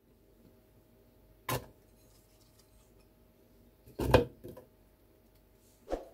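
Chunks of celery dropped into a clear plastic blender cup, giving a few short knocks, with the loudest cluster about four seconds in.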